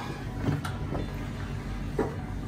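Steady low hum of a lit gas stove burner heating a ladle, with a few faint clicks.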